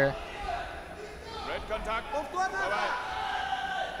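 Raised voices calling out and echoing in a wrestling hall, fainter and higher than the commentary, with low thuds underneath.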